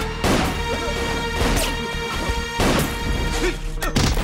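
Film fight-scene sound effects: several heavy crashing impacts, roughly one a second, over a tense music score.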